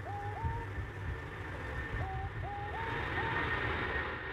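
Jet engines of a four-engine Boeing 747 at takeoff power, heard from beside the runway as it lifts off: a steady low rumble with a hiss that builds through the second half. Several short chirps that rise and then hold sound over it.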